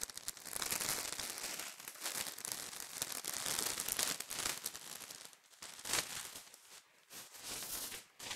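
Clear plastic wrapping crinkling and tearing as it is pulled open by hand. The crinkling goes on for about five seconds, then turns to a few fainter, scattered rustles.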